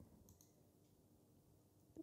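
Near silence: room tone, with a few faint clicks in the first half-second.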